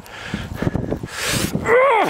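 A man straining to draw a heavy warbow from a crouch: a hard, breathy exhale about a second in, then a drawn-out groan of effort near the end.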